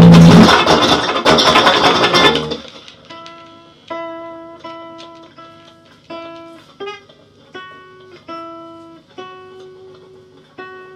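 A loud, dense wall of noise cuts off abruptly about two and a half seconds in. A Gibson ES-175D hollow-body electric guitar is left playing single clean plucked notes, each ringing and fading, a little more than one a second and mostly on the same pitch.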